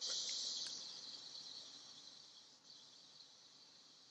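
High, steady insect chorus from the trees, heard through a video-call connection. It comes in suddenly and fades over the first couple of seconds to a lower, steady level.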